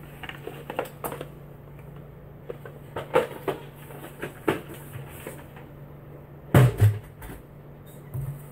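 Knocks and clicks of plastic bucket lids and packaging being handled and set down, with two heavier thumps about six and a half seconds in.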